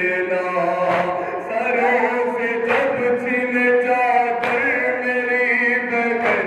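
Men chanting a noha in unison, a sustained wavering melody, punctuated about every second and a half by a loud, sharp slap of hands striking chests together in matam, three times.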